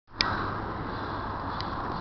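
Steady background noise with a faint low hum, with a sharp click just after the start and a fainter click near the end.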